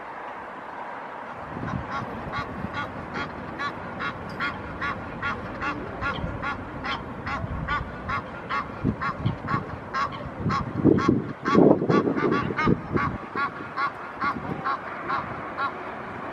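Egyptian goose honking in a long, even series of short harsh calls, about three a second. Partway through, a louder low rumbling noise comes in for a couple of seconds.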